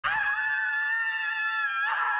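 A young woman's long, high-pitched scream, held at one pitch, cutting off just before the end.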